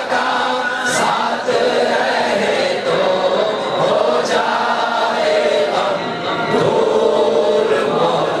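Many men's voices chanting together in unison as a continuous chorus.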